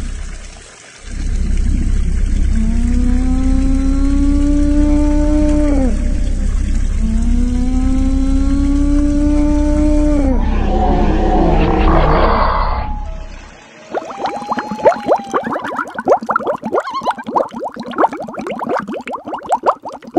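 Dubbed creature calls for a toy dinosaur: two long, moaning calls, each about three seconds, that dip in pitch at the end, over a steady low rumble. After a short drop in the middle, a fast, dense run of sharp clicks and crackles fills the last six seconds.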